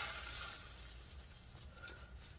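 Paper towel rubbed over the metal inside of a laptop case, a brief soft scrubbing that fades within the first half second, then faint background noise.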